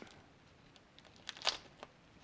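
Kapton tape crinkling as it is wrapped and pressed around two cylindrical battery cells, with a few faint crackles about a second and a half in.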